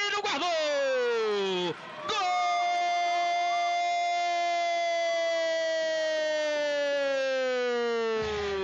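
A Brazilian radio commentator's drawn-out goal shout, "goool". A shorter falling cry near the start is followed by one long held note of about six seconds that slowly sinks in pitch.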